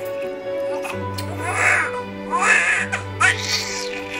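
A newborn crying in several short bursts from about a second and a half in, over background music with low held notes.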